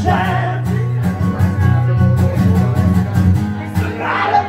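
Live country music: a guitar strummed steadily through the PA in a short instrumental passage between sung lines, a sung phrase trailing off at the very start.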